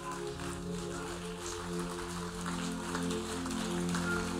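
Soft background music of sustained keyboard chords, the chord changing about a second in and again around halfway.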